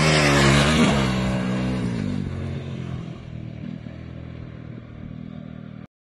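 Motorcycle engine revving hard as the bike passes close on a dirt track, its pitch dipping and rising again about a second in, then fading steadily into the distance over the next few seconds.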